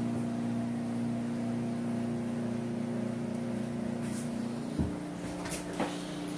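A steady mechanical hum of several fixed tones, which drops to a lower tone about five seconds in. A couple of light clicks near the end come as a wooden louvered closet door is opened.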